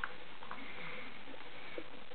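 Quiet room hiss with a few faint, soft taps and rustles from a toddler handling a thick cardboard board book, lifting its pages.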